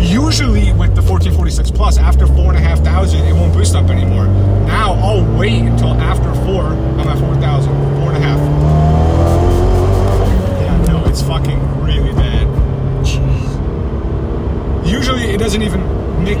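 Fiat 124 Spider Abarth's big-turbo 1.4-litre MultiAir four-cylinder heard from inside the cabin, pulling under load. Its note climbs over a few seconds, then drops back about ten seconds in. Irregular clicks and crackles run through it as the car stutters and jumps on boost, which the driver puts down to the tune.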